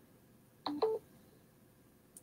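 Two short electronic beeps in quick succession, the second higher in pitch, a notification-style two-note tone, against an otherwise near-silent room.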